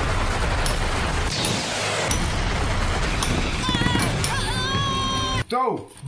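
Anime battle sound effects for a Beyblade special move: a loud, continuous rushing noise with sharp hits through it over music, and a drawn-out shout near the end. All of it cuts off suddenly about five and a half seconds in.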